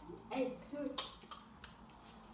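Light clicks and taps of packets and boxes being handled in a kitchen drawer, a few separate ticks spread over the two seconds, with a brief voice near the start.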